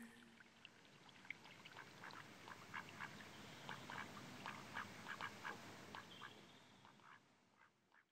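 Faint run of short, rapid animal calls, several a second, fading away near the end.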